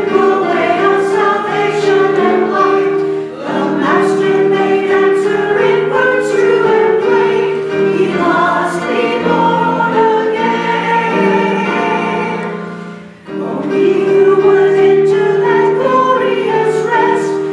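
Mixed church choir of men and women singing an anthem in parts, with held chords and short breaks between phrases about three seconds in and again about thirteen seconds in.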